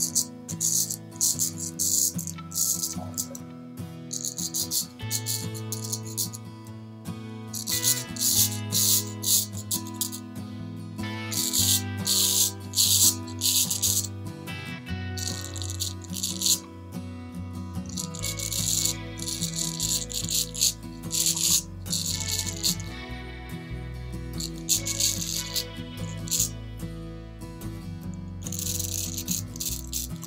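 Straight razor with a Diane D73 blade scraping through lathered stubble on an against-the-grain pass, in short crackly strokes that come in clusters. Background music plays under it throughout.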